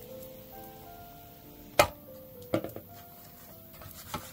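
Soft background music with held notes. About two seconds in, a sharp knock, followed by a few lighter clicks, as a glass bowl of cake batter is tipped and knocked against a metal baking tray.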